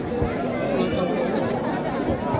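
Crowd chatter: many people talking at once, their voices overlapping in a steady babble.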